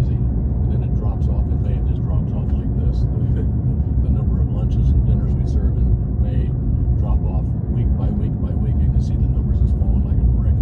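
Steady low road and engine rumble inside a moving car's cabin, with faint talking under it.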